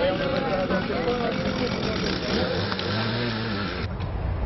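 Street noise with people's voices talking and calling, and a vehicle engine going by from about two and a half seconds in. The sound cuts off abruptly just before the end.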